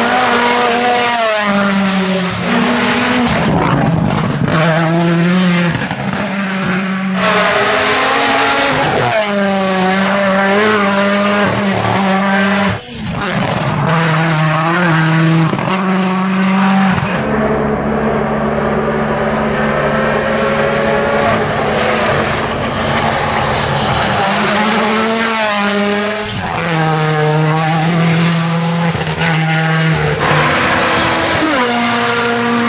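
WRC Rally1 hybrid rally cars (turbocharged 1.6-litre four-cylinders) driving hard through a stage one after another. Their engines rev up and drop back over and over through fast gear changes and downshifts, with a steadier engine note for a few seconds in the middle.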